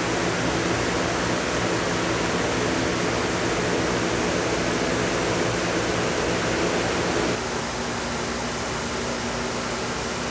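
Steady rushing noise of fans moving air, with a low hum underneath. About seven seconds in it gets a little quieter and the hum's pitch shifts.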